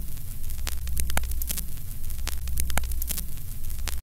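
Television-static sound effect: a steady low hum under dense crackling, broken by irregular sharp clicks.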